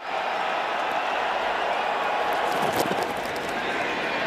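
Steady stadium crowd noise: the even din of a large football crowd, no single voice standing out, with a few faint clicks.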